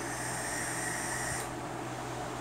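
Draw on a box-mod e-cigarette: the firing atomizer coil and the air pulled through it make a steady hiss with a faint whistling tone, which stops after about a second and a half.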